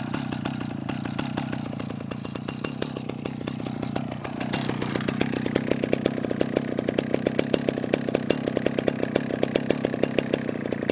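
Husqvarna L65 two-stroke chainsaw engine idling steadily on its own after being revved. A regular pulsing beat in the exhaust note grows stronger from about halfway through, as the saw is lifted.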